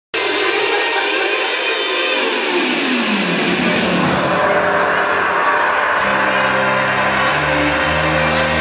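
Music that opens with a long, noisy falling sweep over the first three seconds or so, then settles into steady held bass notes from about six seconds in.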